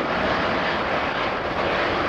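Airbus A380's Engine Alliance GP7200 jet engines running with a steady, even rush of noise.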